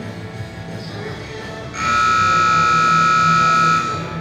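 An arena buzzer sounds one steady, high, piercing tone for about two seconds, starting about two seconds in and cutting off just before the end. This is the time buzzer of a cutting-horse run. Guitar-driven rock music plays underneath throughout.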